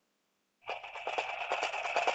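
A cartoon steam-train sound effect cuts in suddenly about two-thirds of a second in, with a rapid chugging rhythm and a hiss.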